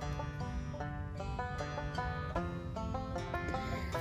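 Instrumental background music with held notes that change every half second or so.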